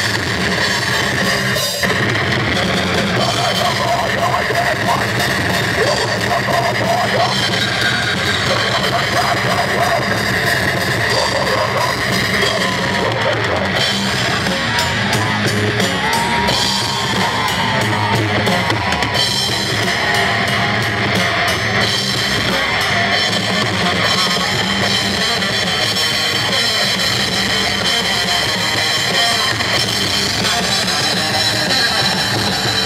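A live metal band playing loud and without a break: electric guitars over a drum kit.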